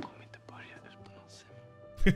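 Quiet, soft-spoken TV drama dialogue over faint background music, heard at low volume.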